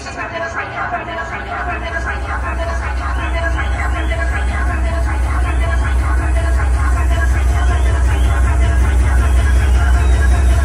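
Dance music played loud over a nightclub sound system, a deep sustained bass swelling while the whole mix grows steadily louder, with voices over it.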